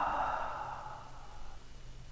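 One long, breathy exhaled sigh from a person's voice, fading out about a second and a half in.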